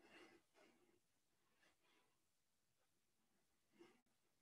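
Near silence, with a few faint breaths exhaled in short puffs.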